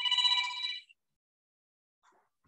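Telephone ringtone: a trilling, bell-like ring of several high tones lasting just under a second.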